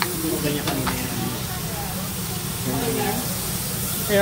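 Meat sizzling on a tabletop Korean barbecue grill as a steady hiss, under murmured conversation around the table, with a couple of light clicks a little under a second in.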